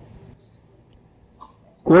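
Faint steady background hiss of an old lecture recording between a man's sentences, with one short faint sound about one and a half seconds in; his speech resumes near the end.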